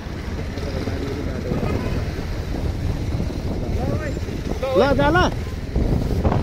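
Wind buffeting the microphone over the steady running of a motorcycle on the move. A short voice with rising and falling pitch cuts in about four to five seconds in.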